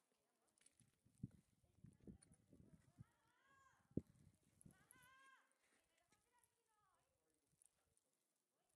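Very faint sound: a few soft thumps, the sharpest about four seconds in, and two short distant calls, a little over three and about five seconds in, each rising and then falling in pitch.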